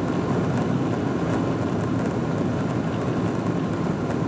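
Steady jet engine rumble and rolling noise heard from inside the cabin of a Boeing 777-200ER moving along the ground, even in level throughout.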